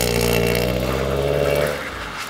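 Car engine held at steady high revs as the car drifts sideways through a snow-covered turn, then the note drops away near the end. Onlookers take the run for being in the wrong gear.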